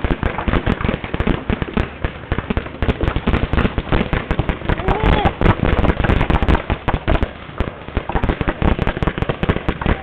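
Paintball markers firing rapid strings of shots, several shots a second, with barely a break.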